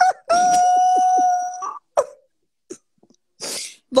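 A man's voice holding one long, steady high wail for about a second and a half, rising at the end, followed by a sharp click and, near the end, a short hissing breath.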